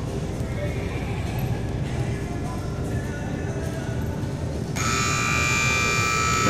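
Arena run-clock buzzer sounding a steady, harsh multi-tone blare that starts suddenly about five seconds in as the time limit runs out. Before it, background country music.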